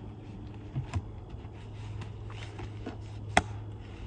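Lid of an ICECO JP40 12 V fridge-freezer being lowered and shut, with a couple of light knocks about a second in and one sharp latch click near the end. The click is the sign that the lid has latched shut.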